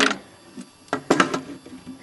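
Plastic Lego models knocking and clicking against a wooden tabletop as a speeder is set down among them: a quick cluster of sharp clicks about a second in, with a few lighter ticks after.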